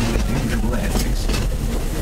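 A passenger car of a park railroad's steam train rolling along the track, heard from inside the open-sided car: a steady low rumble, with people talking over it.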